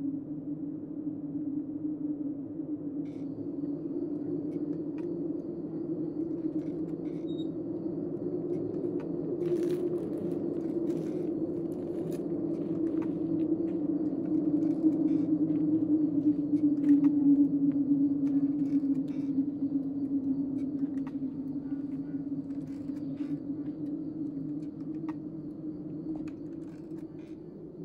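A low, steady droning hum with a slowly wavering pitch, swelling to its loudest about two-thirds of the way through, with faint scattered clicks above it.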